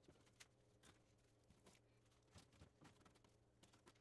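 Near silence, with a few very faint small ticks.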